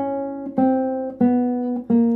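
Classical guitar played slowly, one plucked note at a time, stepping down a chromatic scale a semitone at a time. A new note starts about every two-thirds of a second, and each rings on until the next.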